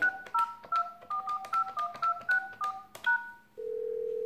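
Yealink T53 desk phone dialling on speakerphone: about eleven keypad presses in quick succession, each a short two-note touch-tone beep with a light key click. A steady tone starts about three and a half seconds in.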